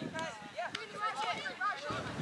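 Voices shouting and calling out across a football pitch, several short high-pitched calls one after another.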